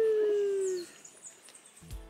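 A person's long drawn-out 'woo', held on one note and sliding slowly down in pitch, fading out just under a second in. Music starts right at the end.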